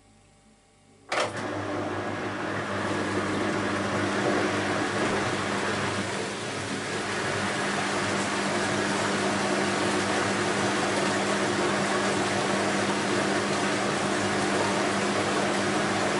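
Beko WMY 71483 washing machine switching into a water phase: a click about a second in, then a steady electric hum from its pump with loud rushing, splashing water in the drum.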